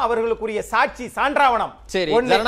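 Speech: a person talking in a studio debate.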